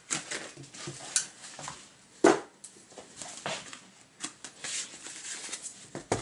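Handling noise of a comic book being slid into a plastic display-panel sleeve: scattered soft rustles and light clicks, with one sharper knock about two seconds in.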